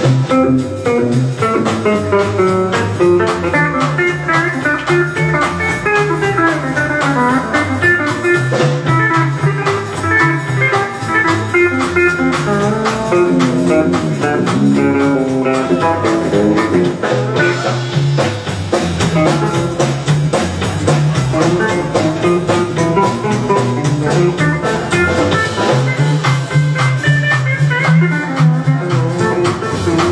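Live country band playing an instrumental break with no vocals: electric guitar, pedal steel guitar, upright double bass and drum kit, playing steadily.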